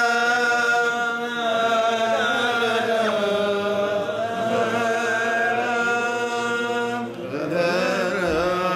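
Unaccompanied man's voice chanting a wordless, drawn-out piyyut melody in maqam Rast, holding long steady notes with slow ornamented turns between them. The phrase dips and ends about seven seconds in, and a new phrase rises at once.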